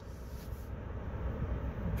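Ford Ranger's 2.3-litre EcoBoost four-cylinder idling in Park, heard from inside the cab as a steady low hum.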